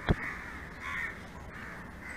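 Crows cawing faintly, the clearest call about a second in.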